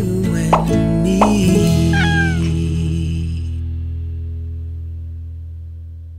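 Closing background music with held low notes fading out. Over it come a couple of short pops, then a cat's meow about two seconds in, the sound effects of an animated like-button graphic.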